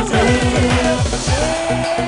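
Loud live house/funkot dance music from an orgen tunggal single-keyboard rig over a sound system: a fast beat built on quickly repeated falling bass sweeps, with a long held note coming in about two-thirds of the way through.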